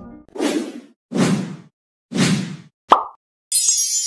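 Logo-animation sound effects: three short swells of noise about a second apart, a sharp click with a brief tone about three seconds in, then a burst of thin high hiss near the end.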